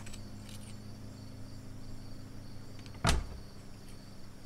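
Quiet room ambience: a steady low hum with faint insect chirping, broken about three seconds in by a single sharp thump.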